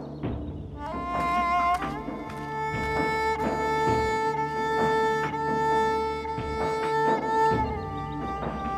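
Dramatic background score of bowed strings: a low sustained drone under a long held high string note that enters about a second in, steps up once, and fades out near the end.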